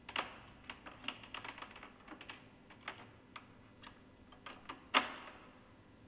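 Steel rigging hardware on a d&b subwoofer's front link being handled: a run of small metallic clicks and rattles as the link and its locking pin are worked. About five seconds in comes one sharp metallic click, the loudest, with a short ring.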